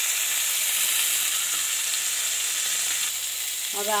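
Oil sizzling steadily in a kadhai as masala-stuffed green tomatoes shallow-fry uncovered over a low flame; the tomatoes are cooked through and ready to come off the heat.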